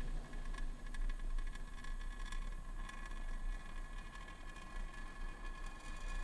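Steady low rumble and hiss with light crackle from a Falcon 9 first stage during its landing burn, its single center Merlin engine firing, picked up by the onboard microphone.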